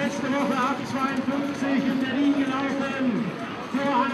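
Speech and voices against a background of crowd noise.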